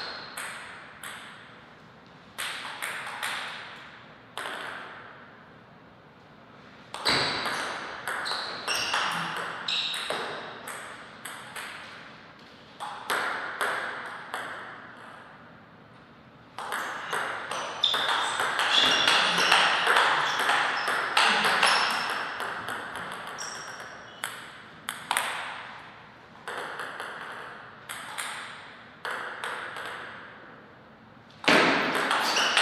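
Table tennis ball being struck back and forth between rackets and bouncing on the table: several rallies of sharp, quick clicks, each lasting a few seconds and separated by short pauses, with a louder stretch of noise during one rally about two-thirds of the way through.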